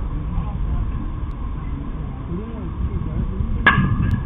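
A baseball bat striking a pitched ball near the end: one sharp crack with a brief ring after it, over faint players' voices and outdoor noise.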